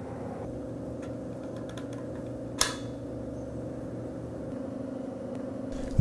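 Full SCBA air cylinder being seated and locked into its backpack frame: a few faint handling clicks, then one sharp click about two and a half seconds in, over a steady low hum.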